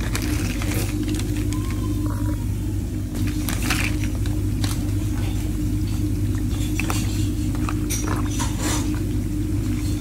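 Onions and whole spices bubbling and crackling in a large pan of hot oil, with occasional scattered crackles, over a steady low hum.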